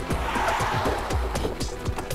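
Cars pulling up fast with a brief tyre skid in the first second, over background music with a steady beat.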